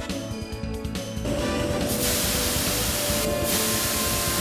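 Background music, then from about a second in a loud, steady spraying hiss builds up. It is high-pressure coolant jetting out of a MEGA Perfect Seal collet chuck nut, through the gap around the tool left by removing its PS ring, with the music continuing underneath.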